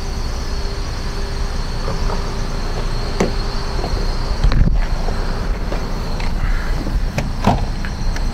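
A steady low rumble of background noise and microphone handling, with a few short clicks. A thump about halfway through comes as the front passenger door of a 2013 Toyota Corolla is opened.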